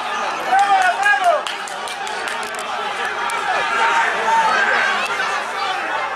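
Several people shouting and cheering at once, excited high-pitched voices, as a team celebrates a goal, with a few sharp claps about two seconds in.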